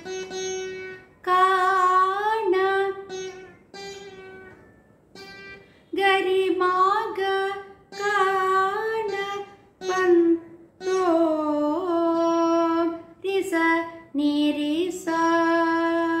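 Saraswati veena playing a slow Carnatic phrase: plucked notes that ring on and bend and slide in pitch, about a dozen of them with short pauses between.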